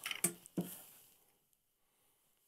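A few soft paper rustles and clicks as a folded sheet of craft paper is handled, then the sound cuts to complete silence about a second in.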